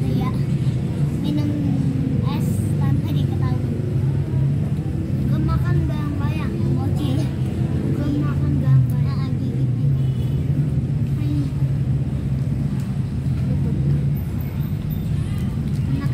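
A steady low hum, as of a motor or machinery, runs loud and unchanging, with faint voices in the background now and then.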